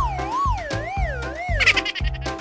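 Cartoon sound effect: a warbling, siren-like tone that wobbles slowly while sliding steadily lower, over children's background music with a steady beat.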